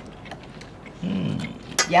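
A person's short, low voiced murmur about a second in, then a brief click just before a spoken word.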